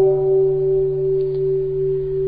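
Buddhist bowl bell ringing on after a strike, one steady humming tone with lower tones beneath. Its higher overtones fade out about halfway through.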